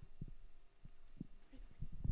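Handling noise on a handheld microphone: soft, irregular low thumps and bumps, more frequent toward the end, over a faint steady hum.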